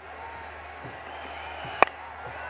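Stadium crowd noise, then a single sharp crack of a cricket bat hitting the ball near the end. It is a lofted shot that isn't struck cleanly.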